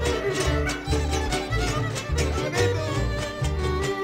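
Instrumental passage from a folk string band: a violin plays the melody over strummed guitar accompaniment and a steady, rhythmic bass line.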